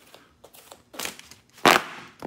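Folding fighting fan being handled and flicked in the hand: a short rustle about halfway through, then a louder, sharp snap of its ribs and fabric near the end.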